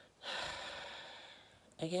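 A woman's heavy breath, starting sharply and fading away over about a second.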